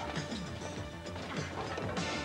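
Crashing and banging as objects are smashed, over tense background music.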